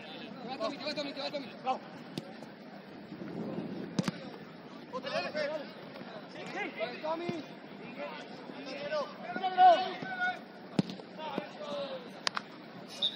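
Football players shouting and calling to one another across an outdoor pitch, with a couple of sharp ball kicks, one about four seconds in and another near the end.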